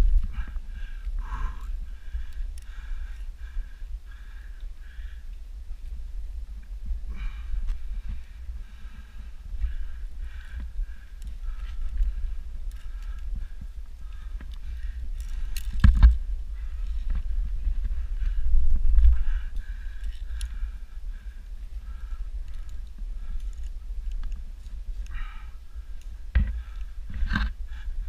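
Steady low rumble on the camera's microphone as the wearer moves, with a few sharp clicks and knocks: one loud one about halfway through and two more near the end.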